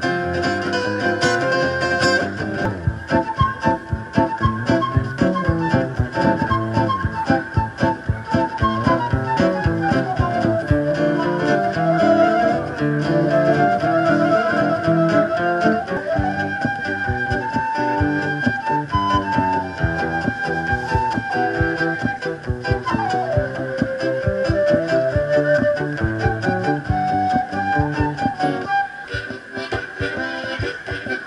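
Acoustic guitar chords with a harmonica played over them, the harmonica holding long notes that bend down in pitch.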